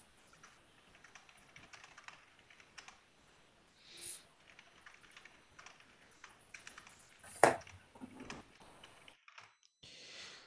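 Faint computer-keyboard typing: a run of light, irregular key clicks as a note is typed. A brief louder noise stands out about seven and a half seconds in.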